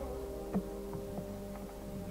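Opera orchestra holding a soft sustained chord in a pause between sung lines, over a low steady hum from an old live recording, with a faint click about half a second in.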